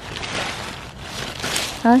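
Strawberry plant leaves rustling in a few uneven bursts as a hand pushes through them looking for fruit.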